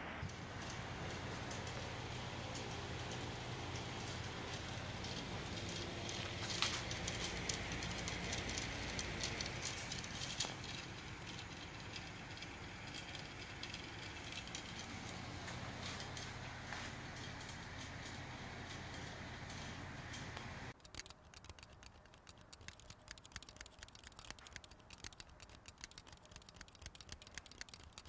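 Pedestal fan running steadily, a low motor hum under a hiss of moving air. The sound cuts off suddenly about 21 seconds in, leaving only faint scattered ticks.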